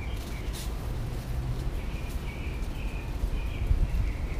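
Birds chirping faintly in the background, coming in about halfway through, over a steady low rumble.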